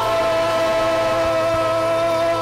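Gospel praise-and-worship music: singers holding one long note over a sustained chord from the band.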